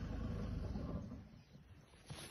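Low engine rumble of an open safari game-drive vehicle, dying away about a second and a half in and leaving it quiet.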